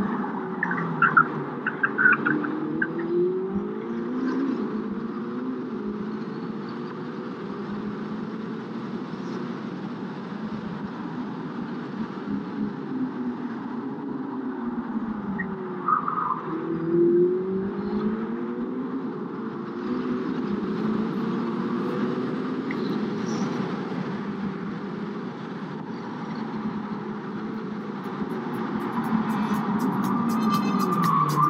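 Ferrari SF90 Stradale's twin-turbo V8 driven hard, its pitch climbing and dropping again and again as it pulls through the gears and slows for corners. Short tyre squeals come near the start and again about halfway through, in a corner.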